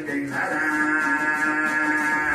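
Uzbek bakhshi singing a terma, holding one long steady note from about a third of a second in, over the plucked two-string dombira.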